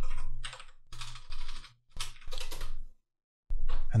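Rapid keystrokes typing in a calculation, in several quick runs separated by short pauses. A man's voice starts just before the end.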